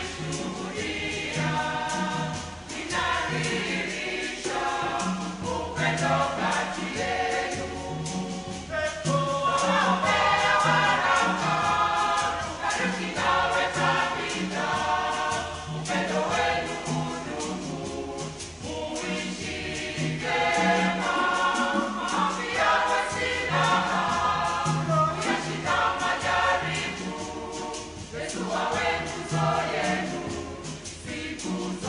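Church choir of mixed men's and women's voices singing a wedding song in parts, the phrases swelling and easing without a break.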